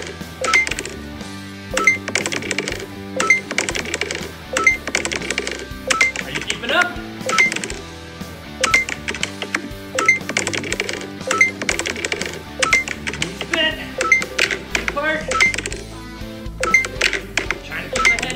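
Fitness-app workout music with a steady beat, overlaid with short bright chime-like dings that recur every second or less, the app's scoring sound as digital cones are hit.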